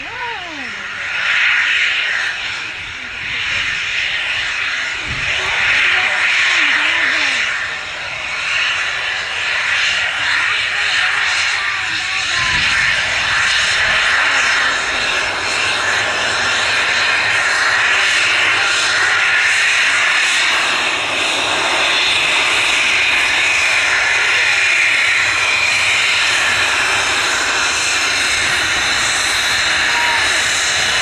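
Embraer Phenom 300E business jet's twin turbofan engines whining and hissing as it taxis past. The sound grows louder over the first few seconds, then holds steady and strong.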